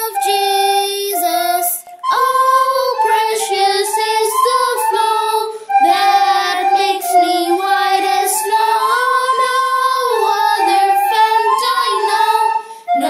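Two children singing a hymn together in phrases, with brief breaks between lines about two and six seconds in.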